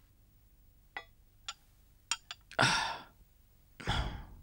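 A man sighs heavily twice: a loud breathy exhale about two and a half seconds in and a second one near the end, after a few faint clicks.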